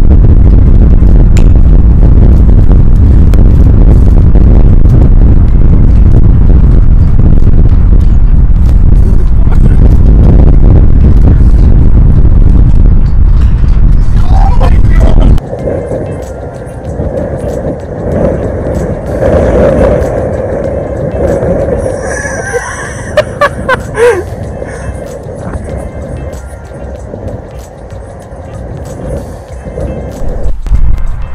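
Strong wind buffeting the microphone, a loud low rumble, over background music. The rumble cuts off abruptly about halfway through, leaving quieter music with a few sharp clicks.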